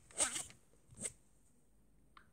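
A stylus pen scraping briefly across a tablet's glass screen near the start, then a single sharp tap about a second in.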